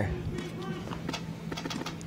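Faint field ambience: a steady low hum with scattered, irregular faint clicks and distant voices.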